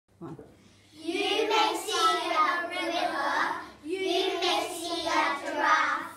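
A group of young children reciting a poem together in unison, in a sing-song chant, after a one-word count-in; the voices run in two long phrases with a brief break near the middle.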